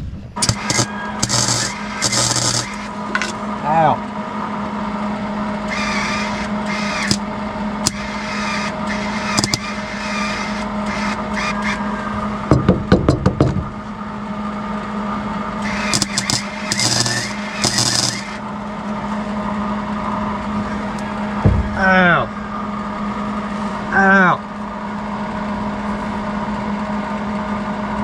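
Wire-feed welder arc crackling in several short bursts of a second or two each, over a steady hum, as the end caps of the front drive shaft's universal joint are tack-welded to stop them working themselves out.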